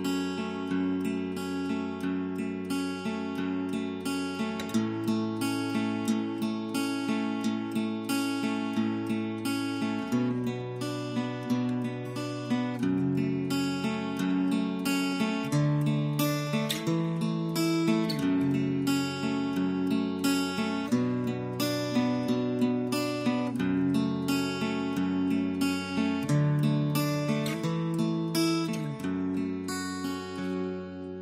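Instrumental minus-one backing track for duduk, with the duduk lead left out. A plucked acoustic guitar plays a quick, steady run of notes over held chords and a bass line that moves every couple of seconds.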